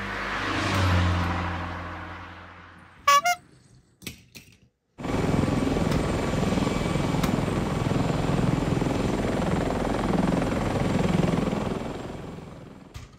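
Helicopter sound effect: a rotor whir that starts suddenly about five seconds in and runs steadily with a slow pulsing throb. Before it comes a swelling and fading whoosh, then a short sharp chirp.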